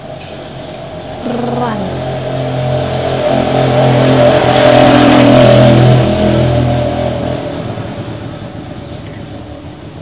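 A motor vehicle driving past on the street, its engine note swelling to a peak around five seconds in and then fading away.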